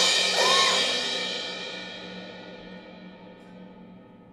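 Suspended cymbal ringing out after a loud crash, its shimmer fading slowly over the few seconds. A couple of short swooping sounds sit on top of the ring near the start.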